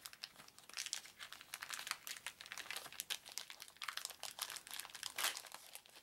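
Clear plastic wrap crinkling and crackling as a sealed sheet of punch-out game cards is handled and unwrapped, in a dense run of small crackles with a louder rustle about five seconds in.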